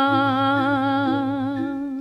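A singer holding one long, wavering note of a Balinese geguritan verse sung in the Pupuh Sinom metre, without accompaniment, the note fading away near the end.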